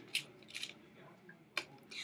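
A few faint, light clicks of small plastic food-colouring bottles being picked up and handled in a little dish.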